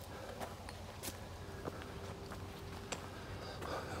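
Footsteps on a loose gravel and dirt path, a faint crunching step roughly every two-thirds of a second, on a steep uphill climb.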